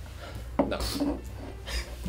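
Bar ambience: a steady low hum with light clinks of glasses and dishes, and a man saying a brief "No."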